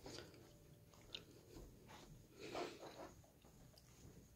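Near silence: faint room tone with a small click about a second in and a soft rustle a little past the middle.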